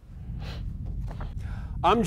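Logo transition sound effect: a low steady drone with a short airy whoosh about half a second in, under an animated station logo flying in.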